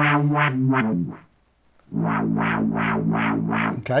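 An iPad synthesizer playing through a Minirig portable speaker: a rhythmic pattern of repeated low synth notes, about four pulses a second, that stops for under a second and then starts again.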